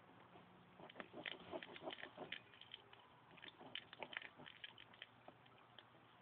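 Pen drawing on milk-carton cardboard: faint, irregular scratchy strokes as the outline is drawn.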